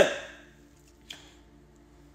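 A man's voice trails off at the start, then a pause with only a faint steady hum and a single short click about a second in.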